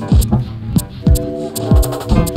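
Upright bass played with fingers alongside a modular synthesizer: sustained bass notes over an electronic pulse of low thumps that drop quickly in pitch, about two a second, with short high ticks.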